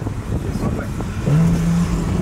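Porsche 911 Carrera S flat-six engine heard from inside the cabin, its note rising sharply about a second in and then holding steady as the car accelerates.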